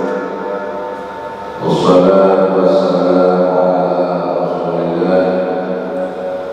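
A voice chanting a devotional recitation in long, held, melodic notes, with a brief pause for breath a little under two seconds in.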